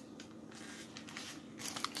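Faint crinkling and rustling of a paper burger wrapper as the burger is handled, with a few soft rustles in the second half.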